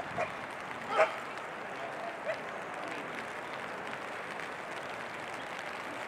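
Steady hiss of rain falling. A few short, sharp calls stand out over it: one just after the start, the loudest about a second in, and a fainter one a little past two seconds.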